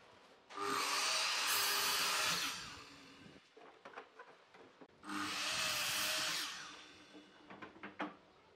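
Makita sliding compound miter saw making two kerf cuts part-way through a wooden board. Each time the motor whines up and the blade cuts for about two seconds, then the motor winds down. The first cut starts about half a second in and the second about five seconds in.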